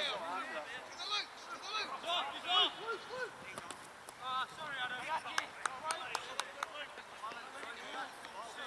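Distant shouts and calls from footballers across an open grass pitch. About five seconds in comes a quick run of sharp clicks lasting a second or so.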